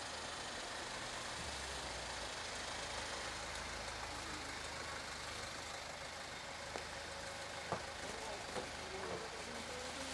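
A car engine idling steadily over outdoor background noise, with a few sharp clicks in the second half.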